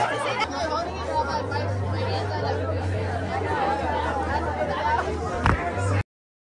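Chatter of a group of people talking and laughing over one another, with a steady low hum beneath. There is one sharp knock about five and a half seconds in, and the sound cuts off suddenly at the end.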